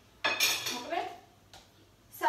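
A spoon clinking and scraping against dishes as cooked apple pieces are served from a frying pan into glass cups: one sudden clatter about a quarter second in that dies away within a second.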